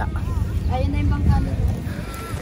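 Faint speech over a steady low rumble.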